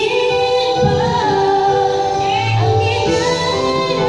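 A woman singing karaoke into a corded microphone over a recorded backing track, her voice holding and sliding between notes.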